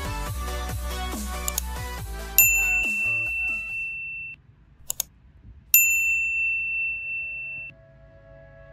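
Electronic background music with a steady beat ends about two and a half seconds in. Then come two bright, bell-like electronic dings, each held for about two seconds and cut off sharply, with two quick clicks between them: a subscribe-button sound effect.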